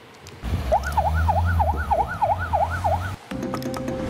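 An emergency-vehicle siren wailing in a fast rise-and-fall, about three sweeps a second, over a low rumble. It cuts off abruptly just after three seconds in, and a music sting with a held tone begins.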